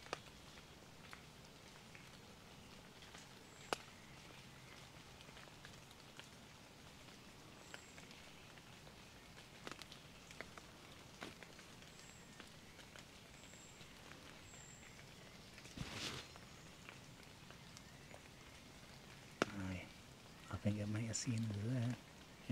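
Quiet woodland in light rain: a faint steady patter, with a few soft clicks, several short high chirps and a brief rustle about two-thirds of the way in. A low voice murmurs near the end.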